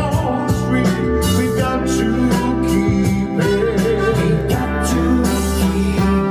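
A song playing: a man singing over a backing track with guitar and drums, the voice mostly in the first part.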